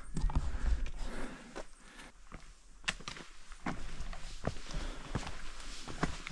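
Hikers' footsteps scuffing on a rocky, root-covered mountain trail, with irregular sharp taps.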